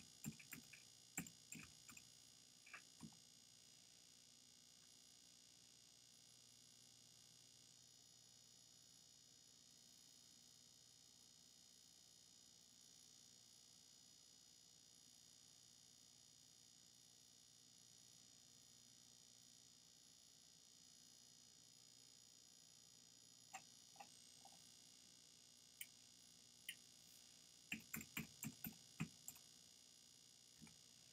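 Computer keyboard keystrokes: a short run of typing at the start, a long stretch of near silence with faint steady hiss, then a quicker run of typing near the end.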